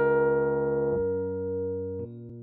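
Piano sound played on an M-Audio Keystation MIDI keyboard in a blues improvisation: a held chord over a low bass, the bass notes stepping down about a second in as the chord slowly fades.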